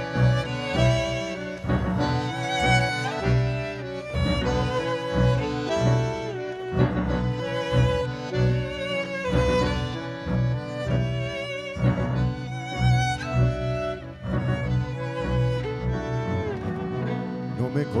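Tango quintet playing an instrumental interlude of a milonga: a violin carries long held notes with vibrato over a steady pulse from double bass, piano and bandoneon.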